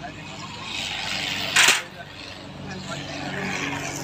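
A crane truck's engine running steadily during a lift, with one brief, sharp, loud burst of noise about a second and a half in.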